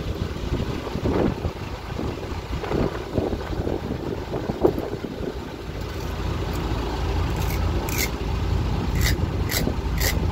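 Wind buffeting the microphone over a low, steady rumble. In the second half come crisp, regular knife strokes, about two a second, as a fish is worked on a wooden cutting board.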